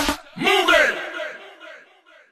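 The music stops abruptly, then one shouted vocal cry rises and falls in pitch and dies away in a long echo.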